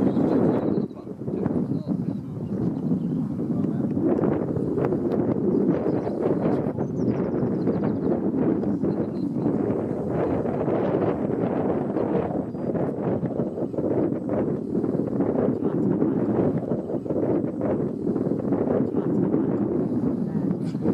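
Wind buffeting the microphone in a steady, fairly loud rush with irregular knocks and flutters, and indistinct voices underneath.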